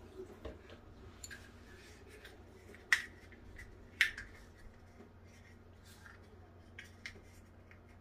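Small clicks and taps of a plastic pregnancy test stick being handled, with two sharper clicks about three and four seconds in.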